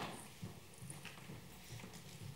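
Faint scattered knocks and clicks in a lecture hall, with a sharper knock right at the start, over a low room murmur.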